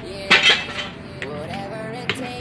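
Sharp clinking knocks of hard pieces clattering together, two loud ones about a third and half a second in, as the inside of an opened concrete tomb niche is cleared out by hand.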